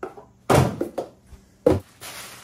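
Knocks and thuds from a wooden wall cupboard being opened and items handled on its shelves: a heavy thud about half a second in, a lighter knock about a second in, and a sharp knock near the end.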